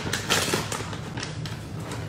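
Plastic bag of shredded cheddar rustling as the cheese is shaken out of it, loudest in the first half-second, then only faint rustling.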